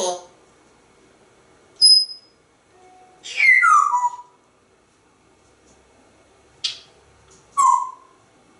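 African grey parrot whistling and calling: a short, high, steady whistle about two seconds in, then a longer call that slides down in pitch, and near the end a sharp chirp followed by another falling call.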